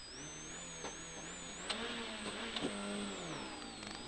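Rally car's engine heard from inside the cabin on a gravel stage, its pitch rising under acceleration and falling away near the end, with a few sharp clicks. A thin high whine wanders up and down in pitch throughout.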